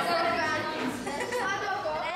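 Many children's voices chattering at once in a large room, overlapping so that no single word stands out.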